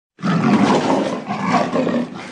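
A lion roaring: one long, loud roar that starts just after the beginning.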